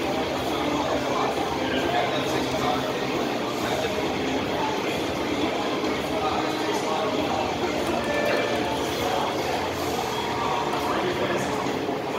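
Steady background din with indistinct voices, no clear single clank standing out.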